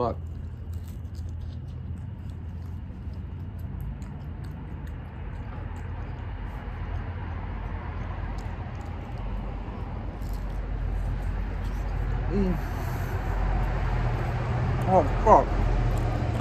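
Low, steady rumble of a motor vehicle running nearby, swelling louder through the second half. A few voiced sounds come near the end.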